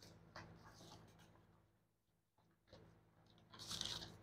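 Near silence with a few faint scratching and rustling noises, the loudest cluster near the end.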